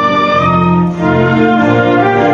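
An anthem played by an orchestra with strings and brass, in held chords that move every half second or so.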